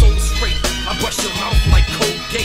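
AI-generated hip hop song: rapped vocals over a beat, with deep bass hits at the start and again about a second and a half in.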